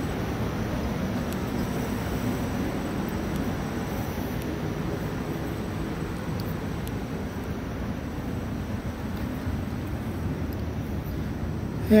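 Industrial fans running steadily in a greenhouse: an even rushing air noise, heavier in the low end, with no breaks.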